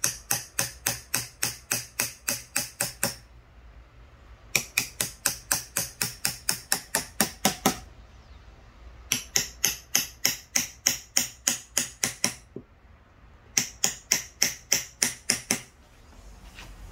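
A small claw hammer taps the butt of a wood-carving knife (changkal) in quick, even strokes, about four a second, driving the blade along the outline of a character cut into wood. The tapping comes in four runs of about three seconds each, with short pauses between them.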